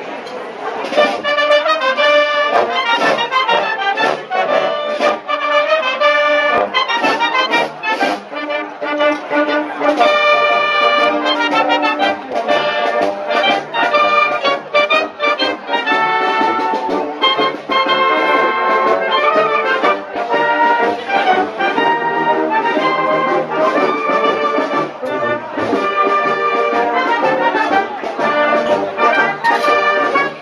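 Wind band playing a tune together: clarinets, saxophones, brass and a sousaphone under a conductor. The music starts about a second in, over crowd chatter.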